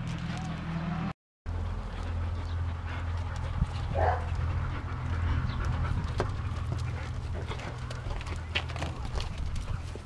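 Dogs moving about and panting over a steady low hum, with one short whine about four seconds in. The sound cuts out completely for a moment just over a second in.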